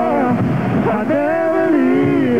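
Male vocal group singing held notes in close harmony into microphones. The chord thins out just under a second in, then comes back full.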